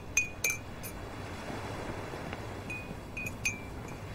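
Metal teaspoon clinking against the inside of a white porcelain coffee cup while stirring: about eight light clinks, unevenly spaced, each with a short bright ring.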